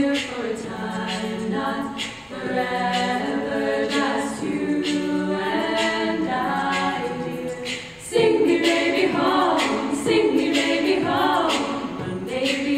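Women's a cappella group singing in harmony, several voices held together in chords that shift every second or two. The sound dips briefly about eight seconds in and comes back louder.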